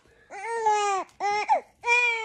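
A young baby crying in several short, high-pitched wails with brief breaks between them, while being sponge-bathed.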